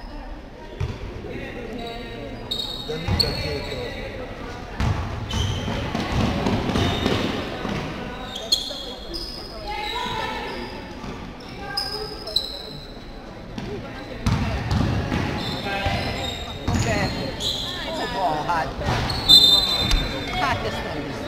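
Basketball game sounds in a reverberant sports hall: the ball bouncing on the court, short high squeaks of shoes on the floor, and players' and spectators' voices calling out.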